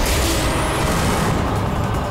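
Loud, noisy whoosh sound effect with a heavy low rumble, over dramatic background music.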